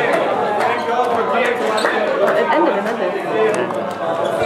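Many people talking at once: a crowd's overlapping chatter, with no single voice standing out.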